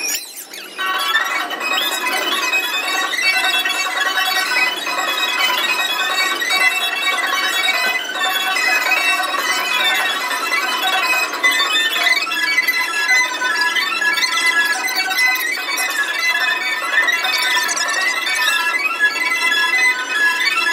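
Carousel band organ music: a bright tune of held pipe notes with bell-like tones, playing steadily.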